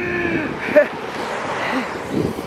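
A car passing close by on a wet road, its tyres hissing on the wet surface. The hiss swells to a peak near the end as it goes past.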